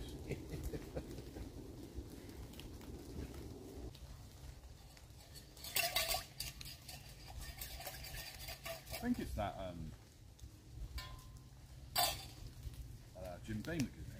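Camp cookware being handled: a sharp clink about six seconds in and another near the end, over a low steady rumble that thins out about four seconds in, with a few brief voice sounds.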